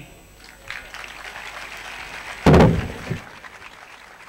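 Crowd applauding, with a single loud thump about two and a half seconds in; the clapping fades toward the end.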